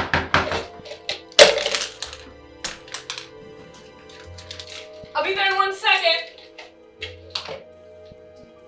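Paintbrushes and the cup holding them clattering onto a hardwood floor, a string of sharp clicks and knocks with the loudest about a second and a half in, then a few lighter clicks as the brushes are gathered. Soft music plays underneath.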